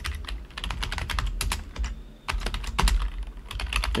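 Typing on a computer keyboard: quick, irregular key clicks, with a short pause about two seconds in.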